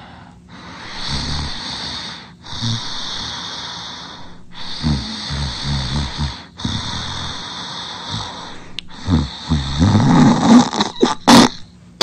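Loud cartoon snoring sound effect: long snores about every two seconds, each breaking off briefly before the next. It grows louder and rougher toward the end, with a few sharp bursts.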